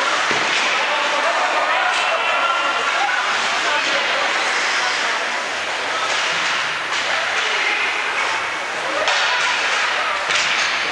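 Ice hockey rink sound: overlapping voices of spectators and players calling out, echoing in a large indoor arena, with a few sharp knocks on the boards, about two seconds in and again near the end.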